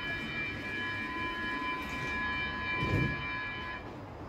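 Stockholm metro train's door-closing warning signal: a steady electronic tone of several notes sounding together for nearly four seconds, then cutting off sharply, as the doors close. A low thump comes about three seconds in, over the rumble of the platform.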